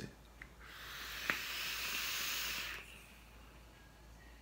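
A draw on a Reload RDA clone, a rebuildable dripping atomiser: a steady airy hiss of air pulled through the dripper for about two seconds, with one short click partway through.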